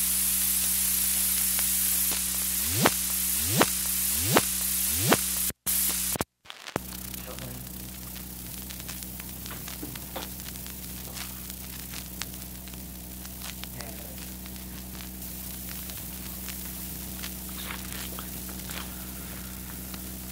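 Surface noise of a 1938 aluminium-based lacquer disc field recording: steady hiss with a low hum, marred by four short rising swoops about 0.8 s apart. The sound drops out twice around five to six seconds in, then returns as quieter hiss with scattered crackles, typical of a badly worn, poor-quality disc transfer.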